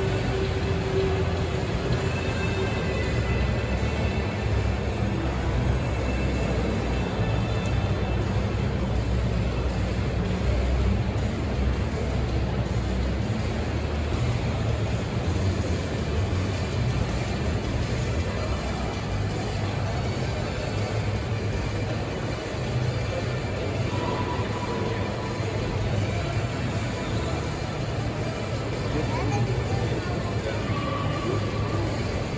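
Background music playing over indistinct crowd chatter, with no single sound standing out.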